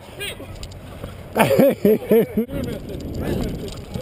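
A man laughing loudly in a quick run of about five "ha"s, followed by a steady rushing noise.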